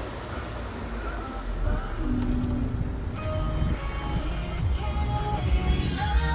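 Low road and engine rumble of a car being driven. About two seconds in, music comes in over it and grows louder.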